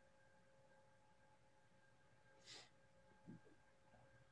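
Near silence: the video-call feed's room tone, with faint steady tones and a brief soft hiss about two and a half seconds in.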